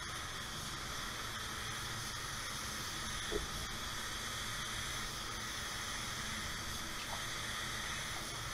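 Gravity-feed spray gun spraying base coat, its air giving a steady hiss.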